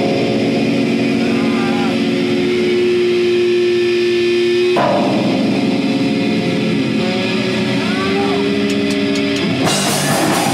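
Electric guitar holding a sustained chord, changing to a second held chord about five seconds in, with a few bends in pitch. Just before the end the drums and full rock band come in.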